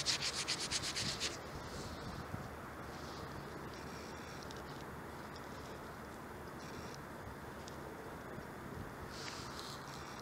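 Gloved fingers rubbing a dug-up dime back and forth, about nine quick strokes a second, to clean the dirt off and read its date; the rubbing stops a little over a second in, leaving faint outdoor background.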